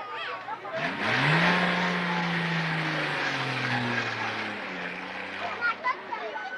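A loud engine sweeps in about a second in and passes close by, its low pitch rising quickly and then slowly falling as it goes, with heavy rushing noise over it.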